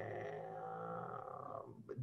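A man's drawn-out, low hum on one steady pitch, stepping up slightly and fading out near the end.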